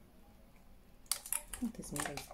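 Several light clicks and taps from a hand mirror and a makeup brush being handled, starting about a second in, with a brief low murmur of a voice near the end.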